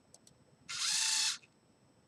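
A pair of LEGO EV3 large servo motors running in sync, turning one rotation forward: a gear whine lasting about two-thirds of a second that starts and stops sharply. It is preceded by two faint clicks.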